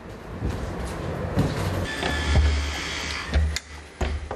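Plastic drum being handled and shifted across a truck's cargo floor: rough scraping with a few low thumps, loudest in the middle.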